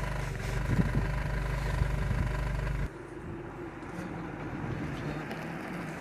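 A steady engine-like hum that drops suddenly to a quieter, rougher rumble about three seconds in.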